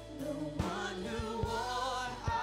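Live worship song: a man and a woman singing together into microphones over a band's sustained chords, with regular drum hits.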